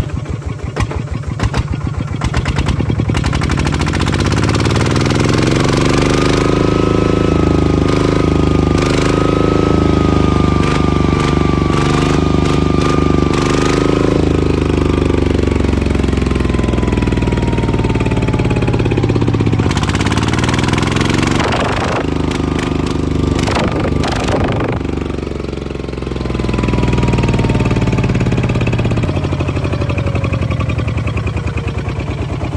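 Kubota ZT155 single-cylinder diesel engine running. Its speed climbs over the first few seconds to a steady fast run with a thin whistle over it, sags briefly near the end and picks up again. A few sharp knocks are heard a little after the middle.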